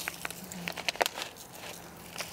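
Faint crackling and scattered light ticks of a bag of granular rose fertilizer being handled and its granules poured out.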